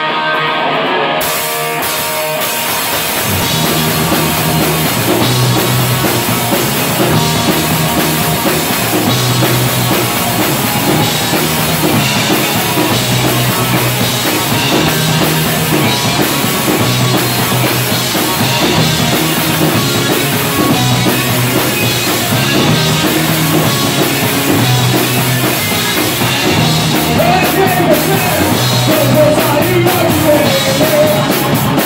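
Live punk rock band playing an instrumental part on electric guitar, bass guitar and drum kit. A lone electric guitar is joined by drums and cymbals about a second in, and the band then plays a steady repeating riff.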